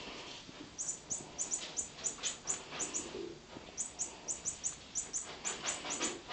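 Short, very high-pitched chirps, many of them in quick pairs, repeating about three or four times a second with a brief pause near the middle, over faint rustling.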